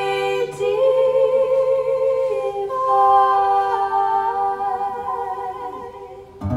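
Two women's voices singing long held notes in close harmony, almost unaccompanied, shifting pitch together a few times and fading toward the end.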